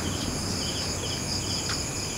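Chorus of night insects: a quick, rhythmic chirping over a steady high-pitched trilling, with a faint tick a little before the end.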